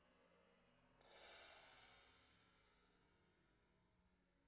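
Near silence: room tone, with one faint soft hiss about a second in that swells and fades over a second or so.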